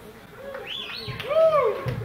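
Live band in an audience recording: a pitched tone swoops up and down in several arcs over a few scattered drum hits, as a drum solo leads back into the tune.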